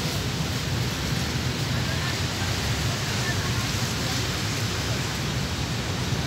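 A steady, even hiss of outdoor noise with faint voices in the background.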